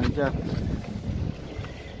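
Wind buffeting the microphone: a low rumble that eases off toward the end.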